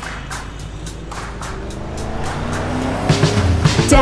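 Cartoon car sound effect: an engine revving, its pitch rising steadily, over faint background music. Louder music starts right at the end.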